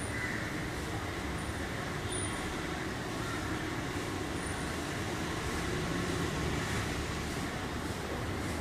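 Steady outdoor background noise, an even low rumble and hiss like distant road traffic, with no distinct events.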